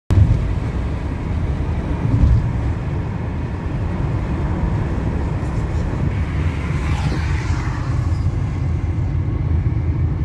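Steady low rumble of a car driving at highway speed, heard from inside the car, with a swell of higher hiss about seven seconds in.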